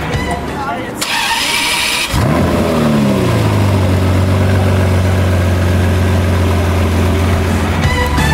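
Ferrari F512 M's 4.9-litre flat-twelve starting: the engine catches about two seconds in, flares in revs and drops back within about a second and a half to a steady idle.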